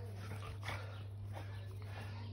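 A dog whimpering faintly in short bursts over a steady low hum.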